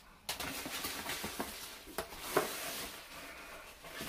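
Bubble wrap and packing being handled and pulled from a cardboard box: a steady rustling and crinkling with a few sharper clicks.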